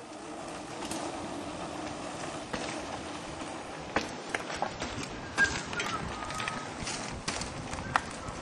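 Mountain bikes rolling along a dirt forest track: a steady rumble of tyres on the ground, with scattered clicks and rattles of the bikes over stones from about four seconds in.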